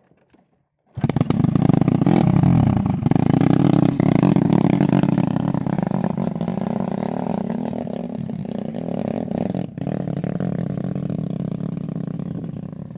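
Small petrol engine of a motorized palm-fruit carrier (power wheelbarrow) starting suddenly about a second in and running loud under load, rising in pitch, then slowly getting quieter as the machine pulls away.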